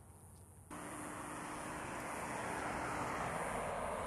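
Distant vehicle noise outdoors: a steady rush that starts suddenly under a second in, then slowly grows louder.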